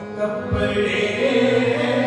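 Sikh kirtan: a hymn sung in raag with harmonium accompaniment, the voice holding and bending long notes over the harmonium's steady tones. A low thump comes about half a second in.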